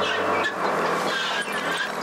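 Engine of a large landfill boring rig running steadily with a loud mechanical hum.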